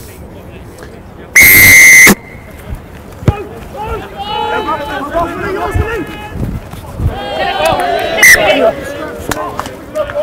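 Referee's whistle blown once, a loud shrill blast of under a second, for a rugby kick-off. It is followed by shouting from players and spectators.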